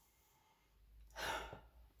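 One short sniff, a breath drawn in through the nose about a second in, to smell a wax melt bar held under the nose.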